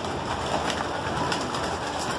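A flock of homing pigeons cooing, a dense, steady mix of many birds.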